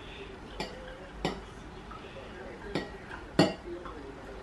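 Coloured water poured from a glass measuring jug into a drinking glass, with several sharp glass clinks as glass touches glass, the loudest near the end.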